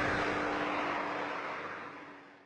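The tail of electronic outro music dying away: a faint held low note and a fading wash of reverb, growing steadily quieter.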